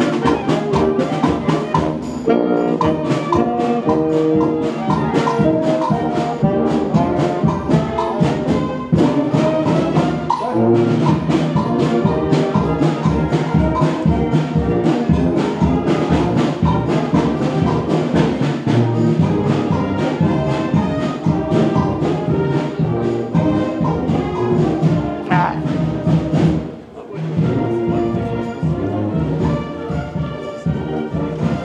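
Marching wind band of saxophones, flutes, clarinets and sousaphone with drums, playing a march on the move, the drums keeping a steady marching beat. The music drops out briefly a few seconds before the end, then carries on.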